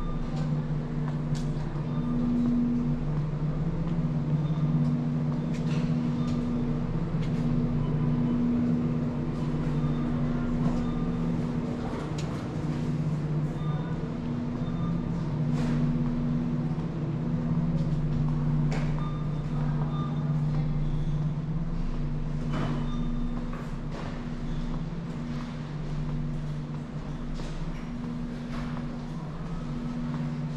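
Grocery store ambience: a steady low mechanical hum with scattered light knocks and clicks.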